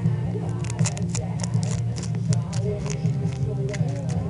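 Foil Pokémon card booster pack wrapper crinkling in the hands, a quick run of crisp crackles that thins out toward the end, over steady background music.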